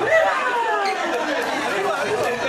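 Several men's voices talking over one another with laughter, in a reverberant hall.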